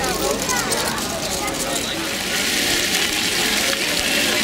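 People talking in the background, then from about halfway in the steady splashing of water falling from a tiered fountain comes in and carries on.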